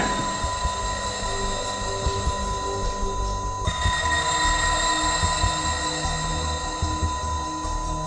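Tense electronic background score: a steady high whine held throughout over a pulsing low note that repeats about three times a second. The pulse drops in pitch and the texture shifts about three and a half seconds in.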